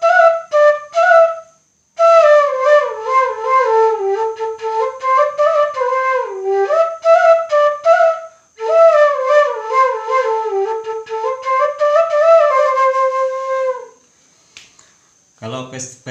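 Bamboo suling flute in G playing a solo melody in three phrases with short pauses for breath between them, stopping about two seconds before the end.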